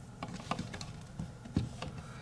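Light plastic clicks and taps as a DJI cellular dongle and its USB-C cable are handled and fitted into the back compartment of a DJI RC Pro controller. There are about half a dozen short clicks, the loudest a little after halfway.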